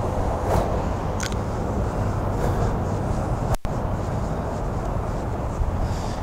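Steady low outdoor rumble with some hiss, cutting out for an instant a little past halfway.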